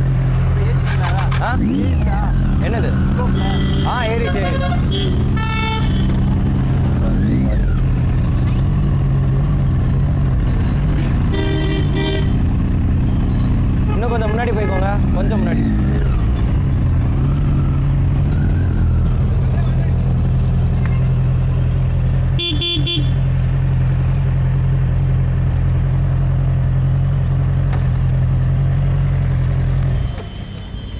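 Motorcycle engine running steadily at low revs in slow, stop-start traffic. Vehicle horns toot several times: a few times a few seconds in, once about midway and once more later, with voices nearby.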